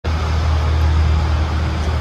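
Steady background traffic noise: a constant low hum and rumble with a hiss over it.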